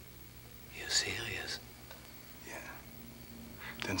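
A man's short, breathy, whispered vocal sound about a second in, and a fainter one about two and a half seconds in, over a low steady hum.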